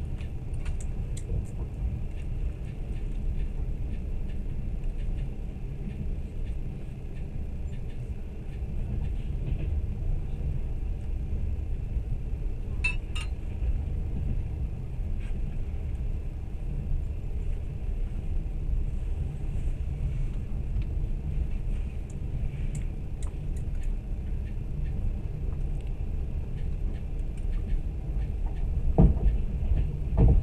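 Steady low rumble of a moving train heard from inside the carriage, with a short clink about halfway through and a thump near the end.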